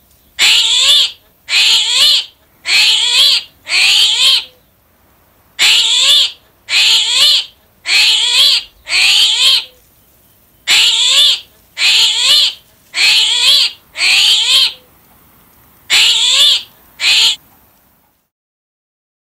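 An animal call, a short rising cry repeated in three sets of four about a second apart, then a last pair, with short pauses between the sets.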